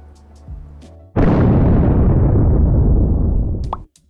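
A large explosion goes off about a second in, a loud blast that rumbles and fades for about two and a half seconds, then cuts off abruptly just before the end. Faint background music runs underneath.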